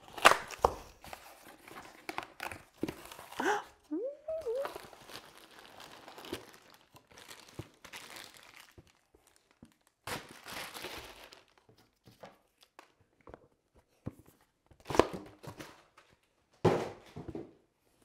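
Cardboard shipping box being torn open by hand: tape ripping and flaps scraping, then plastic wrap crinkling around the product box. The sounds come in irregular bursts with sharp clicks, the loudest near the start and about fifteen and seventeen seconds in.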